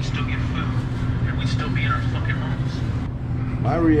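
A steady low hum runs throughout, with faint, indistinct voices in the background.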